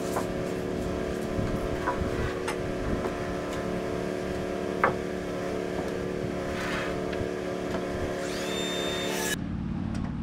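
Air compressor running with a steady motor hum, then cutting off abruptly about nine seconds in, as a compressor does when its tank reaches pressure. A few light knocks of lumber are heard along the way.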